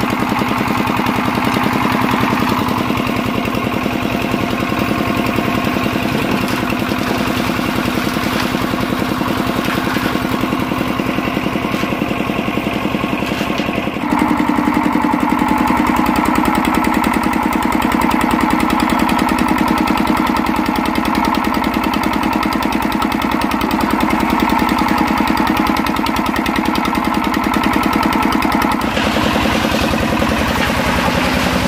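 Portable drum concrete mixer's small engine running steadily, with the drum turning a load of gravel and wet cement. About halfway through the sound steps up a little louder and its pitch shifts, then holds steady.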